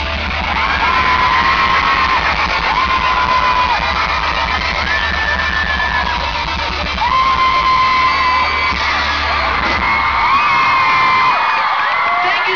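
Loud live pop concert music, recorded from the audience: a heavy bass beat under short high held notes that repeat about every two seconds, each rising into its hold. The bass drops out about ten seconds in.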